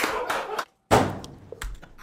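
A man laughing hard, then a thump about a second in and a quick run of irregular slaps and taps.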